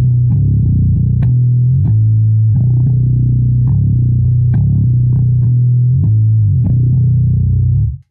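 Fender Precision Bass in drop B tuning, played with a pick: a loud riff of repeated low open-string notes and fretted notes at the second and fifth frets, with a slide from the fifth fret up to the tenth. The notes cut off just before the end.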